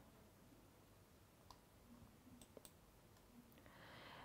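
Near silence: room tone with a few faint, short clicks around the middle and a faint rush of noise near the end.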